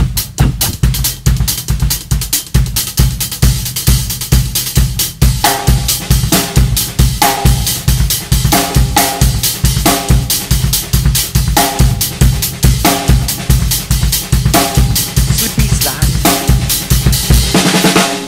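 Acoustic drum kit playing a funk groove, the bass drum placed off the first beat against an even stream of semiquaver strokes. From about five seconds in, ringing pitched drum hits recur about once a second. The playing stops abruptly at the end.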